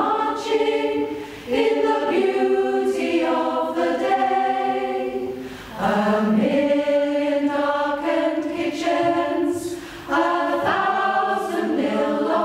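Mixed choir of men and women singing unaccompanied in harmony, held notes in phrases of about four seconds with a short break between each.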